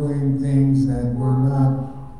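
A man's voice singing long held notes into a microphone, changing pitch a few times and fading near the end.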